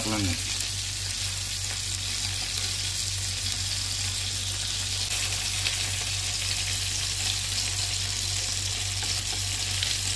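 Small whole river fish shallow-frying in hot oil in a pan, sizzling steadily, with a metal spoon moving them about.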